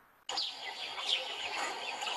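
Many small birds chirping and twittering over steady open-air background noise, cutting in suddenly about a quarter second in.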